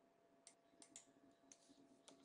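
Near silence with about four faint, short clicks, spread over the middle of the stretch.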